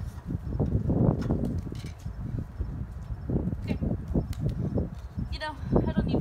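A Samsung Galaxy Ace 4 phone, dropped from the top of a stepladder, hits a concrete driveway with a sharp crack among a few lighter clicks and knocks. Under it runs a gusty low rumble of wind on the microphone.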